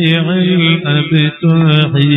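A man chanting Arabic salawat, devotional verses in praise of the Prophet, in long held, wavering notes broken by short pauses.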